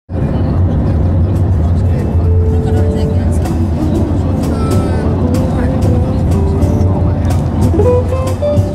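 Voices and scattered musical sounds over a steady low rumble, with many small clicks and knocks.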